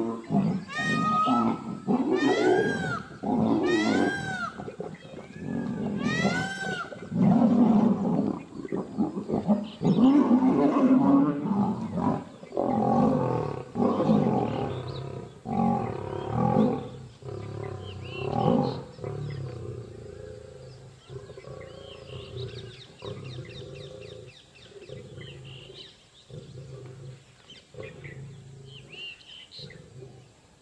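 Two Asiatic lions fighting, with loud snarls and roars in quick succession that die down after about twenty seconds.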